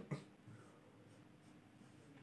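Faint sound of a marker pen writing on a whiteboard.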